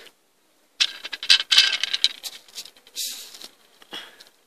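A quick run of light clicks and clatter from small hard objects knocking together, then a short rustle about three seconds in.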